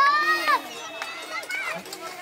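A child's high-pitched call or squeal, about half a second long, rising and then falling in pitch, followed by quieter children's voices.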